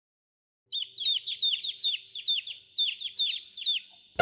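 Baby chicks peeping: a run of short, high, falling peeps, about four a second, starting under a second in and pausing briefly about two and a half seconds in.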